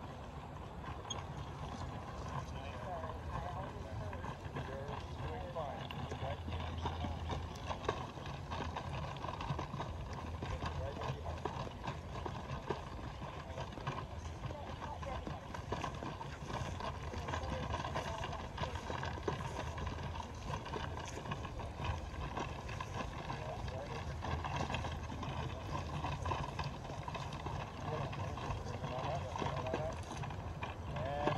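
Horse walking on grass, drawing a limber and 4-pounder field gun, with soft hoofbeats and small clicks and knocks from the moving carriage, under indistinct voices talking throughout.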